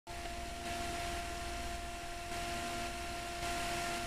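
Bedini pulse motor running steadily, giving an even hum with a couple of held tones over a faint hiss.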